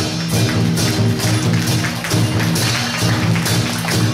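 Procession music for a temple umbrella-dance troupe: a steady beat of light, sharp taps about twice a second over low held notes that shift in pitch.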